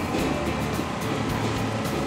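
Background music with a steady low rumble underneath.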